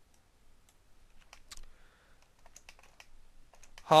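Irregular, quick clicks of a computer mouse and keyboard as bones in 3D software are selected, rotated and moved, growing more frequent in the second half.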